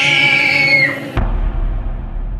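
Horror-style soundtrack music: a loud, shrill high sound over sustained tones cuts off abruptly about a second in, and a deep boom follows and rings out.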